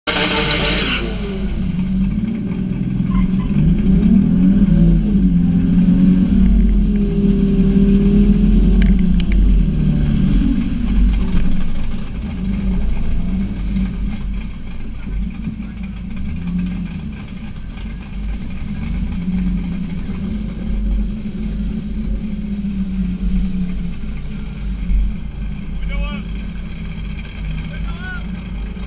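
Toyota Supra engine idling and running at low revs, its low pitch wavering up and down as the throttle changes. A brief loud noise comes in the first second.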